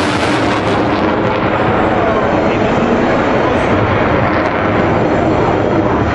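F-16 Fighting Falcon jet engine heard from the ground during a display flight: a loud, steady rushing jet noise that does not let up as the fighter manoeuvres overhead.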